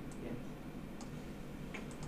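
A few faint, sharp clicks of a computer mouse, spaced unevenly, over a low room hum.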